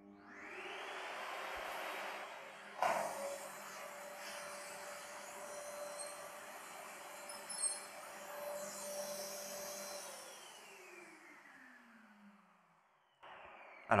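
Canister vacuum cleaner switched on and running with its suction-relief vent left open, its floor nozzle straight away sucking up the polyethylene dust sheet it is run over, with a sharp crack about three seconds in. About ten seconds in the motor is switched off and winds down with a falling whine.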